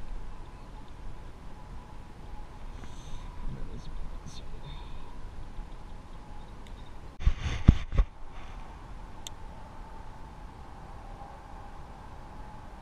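Close handling noise: a cluster of knocks and rumbles against the microphone about seven seconds in, over a faint outdoor background, as a freshly caught bluegill is handled and unhooked by hand.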